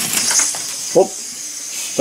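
Small brass model steam engine running on about five pounds of compressed air: a steady hiss of air exhausting from its cylinder, with a faint rapid ticking of the running mechanism.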